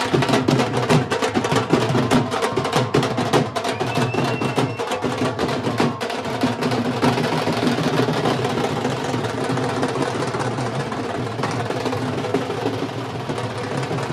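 Several dhol barrel drums and stick-beaten side drums playing together in a fast, dense, continuous beat.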